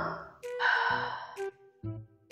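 Background music with a breathy inhale that starts about half a second in and lasts nearly a second: a sniff of powder through a straw.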